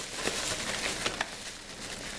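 A shopping bag rustling and crinkling as hands rummage through it, with a few small clicks.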